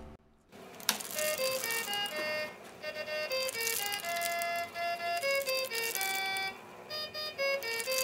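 Animated Santa Claus toy with an accordion playing a simple tune of single notes from its built-in music chip, starting after a click about a second in, with a short break near the end.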